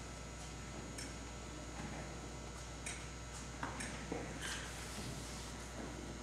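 Quiet hall room tone: a steady low electrical hum with a handful of faint scattered clicks and rustles.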